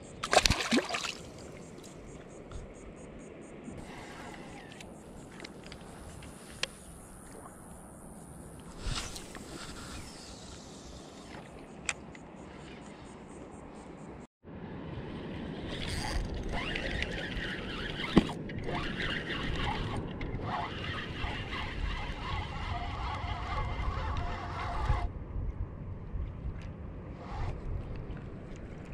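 A short splash as a small sheepshead is dropped back into shallow water, then quiet lapping water. Later, wind rumbling on the microphone with a spinning reel being cranked, a steady whir that stops abruptly a few seconds before the end.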